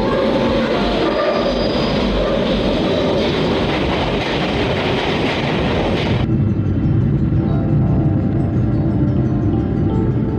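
London Underground train arriving at the platform: a loud, steady rushing noise that cuts off suddenly about six seconds in, leaving a lower steady noise. Music plays under it throughout.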